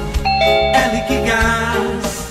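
Two-note ding-dong doorbell chime near the start, over background music.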